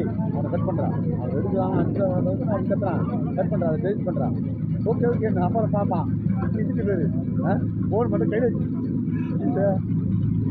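Several men talking and calling out over the steady low hum of a brick-making machine running.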